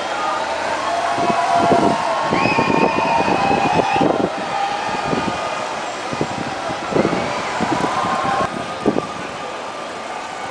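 Busy urban street traffic, with buses and cars running and mixed voices of onlookers. About two and a half seconds in, a high tone rises and holds for over a second.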